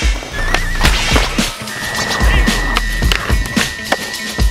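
Music with a deep, repeating bass beat and a thin high tone, over skateboard sounds: wheels rolling on concrete and the trucks grinding along a concrete ledge.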